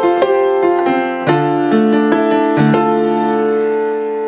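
Software piano played from a MIDI keyboard controller with the sustain pedal held down: a slow series of chords whose notes ring on and overlap instead of stopping short. Near the end the last chord keeps ringing after the hands have left the keys.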